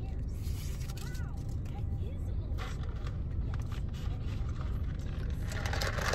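Steady low rumble of a car heard from inside its cabin, with soft sips of an iced latte drawn through a plastic straw.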